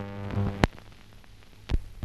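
Hum with a stack of overtones on an old film soundtrack, fading out after about half a second. Two sharp pops follow about a second apart, typical of a splice passing, over faint background crackle.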